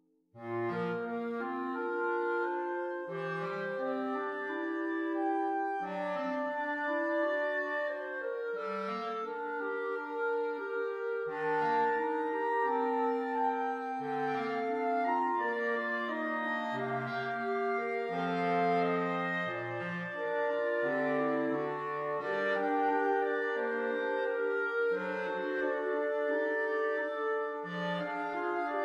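Clarinet choir of E-flat, B-flat, alto and bass clarinets playing a slow, hymn-like passage of held chords under moving melodic lines. It comes back in after a brief silence about half a second in.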